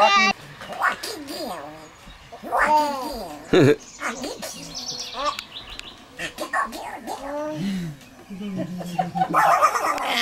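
A baby laughing and squealing in a string of short, high calls that rise and fall in pitch, with brief pauses between them, while an adult plays with her.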